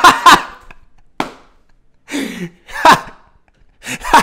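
A man laughing hard in a string of bursts, loudest in the first half-second, with further bursts about one, two and three seconds in.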